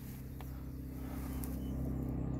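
Car engine idling, heard inside the cabin as a steady low hum that grows slightly louder.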